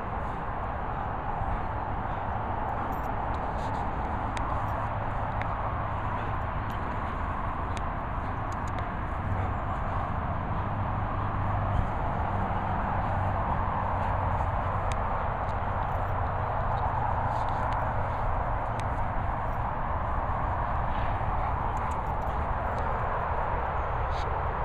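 Steady rushing outdoor background noise, with scattered faint clicks and taps.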